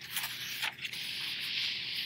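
A book page being turned by hand: a steady rustle of paper sliding over paper, briefly broken under a second in, as the page is laid over and pressed flat.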